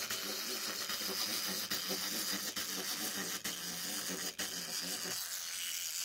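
Small plastic wind-up toy's clockwork motor whirring as the toy walks, with a few sharp clicks; it stops near the end.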